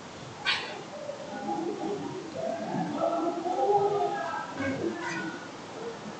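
Faint, indistinct voices in the background, with a sharp tap about half a second in and a lighter one near five seconds: the interactive whiteboard stylus tapping calibration targets.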